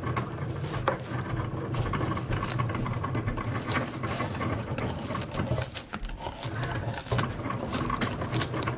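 Small handling sounds of stickers being peeled off a Cricut cutting mat and lifted with a thin metal spatula: irregular light clicks, scrapes and sticky peeling sounds, over a steady low hum.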